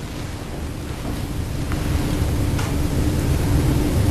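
Steady background hiss and low rumble of the recording, with a faint hum, swelling gradually louder, and a few faint ticks.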